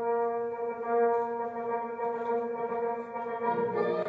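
Recorded music starts abruptly: one long held chord, with lower notes coming in near the end.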